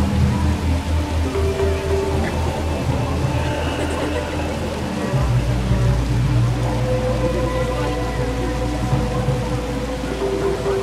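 Mirage volcano show soundtrack over outdoor speakers: a fast, pulsing low drumbeat that gives way about five seconds in to a steady deep rumble, over a hissing wash of noise as the flames burst.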